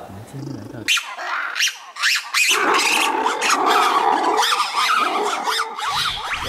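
Black-and-white ruffed lemur giving its heart-rending howl. The call breaks out about a second in, eases briefly, then swells into a loud, unbroken howling from about two and a half seconds on.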